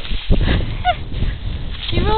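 Dry grass rustling and crackling under a small dog rolling and squirming on its back. There is one very short, high squeak-like call about halfway through.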